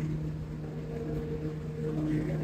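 A steady low mechanical hum with faint background noise.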